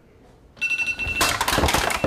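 A smartphone ringtone starts about half a second in as a high, steady ring, then gives way to loud scuffling and knocking.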